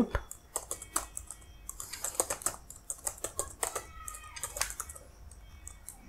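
Computer keyboard typing: a quick, irregular run of key clicks that thins out near the end.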